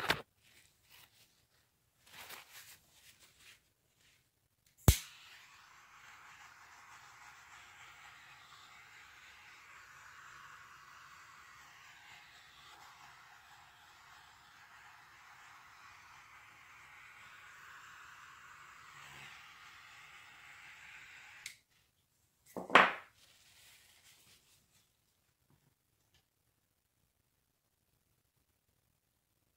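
Handheld butane torch clicked alight, then a steady gas-flame hiss for about sixteen seconds as it is passed over wet acrylic pour paint, cutting off suddenly; a single knock follows about a second later.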